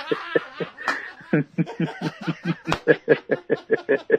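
A person laughing: a long run of quick ha-ha pulses, about five a second.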